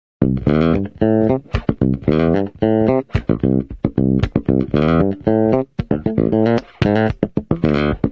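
Fender Jazz Bass played solo through its bridge pickup alone: a busy funky line of plucked notes packed with ghost notes and dead notes, giving a bright, tight tone.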